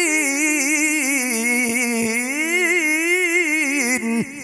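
A male qari's melodic Quran recitation (tilawah) sung into a microphone over a sound system: one long unbroken melismatic phrase with quick vibrato, the pitch sinking and then climbing again.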